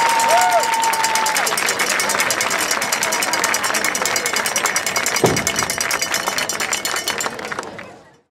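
Stadium crowd applauding and cheering with dense, rapid clapping. A steady whistle-like tone stops about a second and a half in, and there is a single thump about five seconds in. The sound fades out at the very end.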